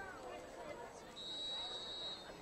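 Chatter of a stadium crowd, then a referee's whistle sounding one steady, shrill note for about a second, starting just after a second in.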